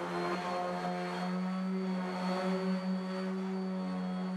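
Electric random orbital sander running steadily with an even hum while sanding plywood faces up to 180 grit before finishing.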